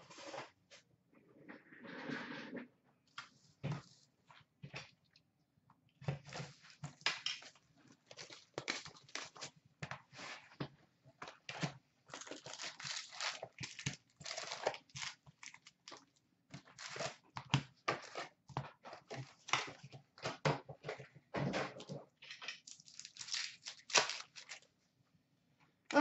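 Upper Deck SP Authentic hockey card box and its foil packs being opened by hand: a run of irregular crinkles and rips. It is sparse at first, then steady handling from about six seconds in until just before the end.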